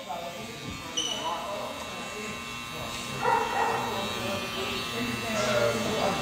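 Electric hair clippers buzzing steadily during a haircut, under indistinct voices.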